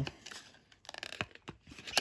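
Paper and cardboard packaging being handled: a rustle with a few light clicks and taps.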